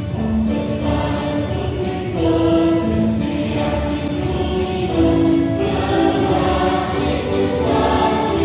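A choir singing slow, long held notes over instrumental accompaniment, in the style of Christian devotional music.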